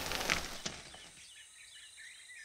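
A short burst of noise in the first half-second or so, then faint rainforest ambience with small bird chirps.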